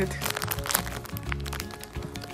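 Clear plastic bag around a squishy toy crinkling and crackling with many quick clicks as it is handled, over background music with a steady low bass line.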